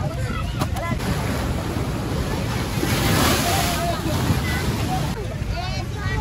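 Wind buffeting the microphone, swelling in a stronger gust about three seconds in, over the chatter of a crowd of voices.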